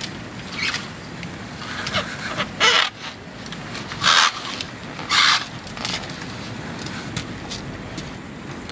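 Northern tamandua (collared anteater) hissing: three short, sharp hisses about a second apart in the middle, over a steady background of outdoor noise.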